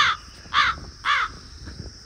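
A bird calling three times in quick succession, about half a second apart, each call short and arching up then down in pitch.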